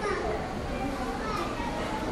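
Background chatter of several voices, children's among them, quieter than the main speaker.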